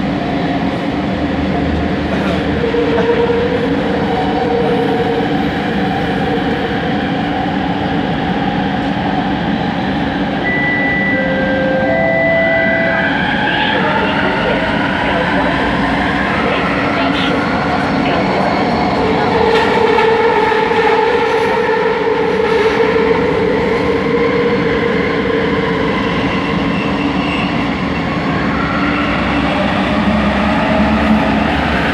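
Inside a Bombardier Innovia ART 200 linear-motor metro car running through a tunnel: steady rumble and rolling noise, with a whine that slowly slides up and down in pitch as the train changes speed.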